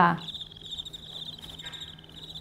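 Cricket chirping sound effect, a steady high pulsing trill that begins a moment in: the stock gag for an awkward silence.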